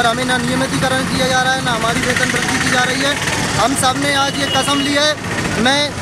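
Mostly speech: a man talking in Hindi into a microphone, over a steady background of outdoor noise.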